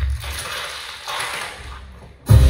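A mechanical, ratchet-like clicking sound effect played over a theatre's sound system. It swells twice and fades, starting from the tail of a loud hit.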